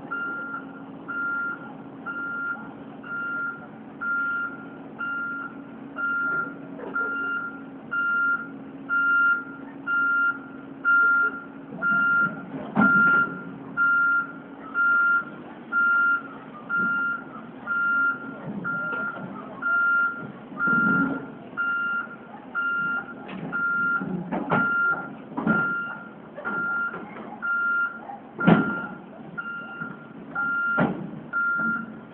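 Tracked excavator's travel alarm beeping evenly, about four beeps every three seconds, over its running diesel engine as it climbs onto a lowboy trailer. Several heavy knocks come through from the middle on, the loudest near the end.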